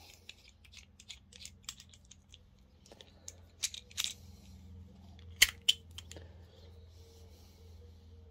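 Light metal clicks and ticks from a nut driver's steel shaft being turned and worked out of its threaded amber plastic handle, with two sharper clicks about five and a half seconds in.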